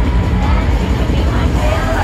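Live pop concert music through a stadium sound system, recorded from the crowd, with heavy bass and a lead vocal over it.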